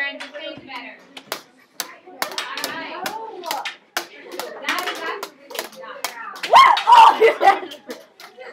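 Thin hooked canes wielded as swords clacking together in a rapid run of sharp hits, with girls' voices throughout and a loud cry about six and a half seconds in.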